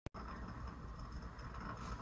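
A single short click at the start, then faint room tone with a steady low hum.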